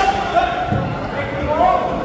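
Men shouting at ringside of a kickboxing bout, with a dull thud about a third of the way in.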